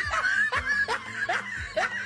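A man's laughter, a string of short falling 'heh' notes about three a second, over background music.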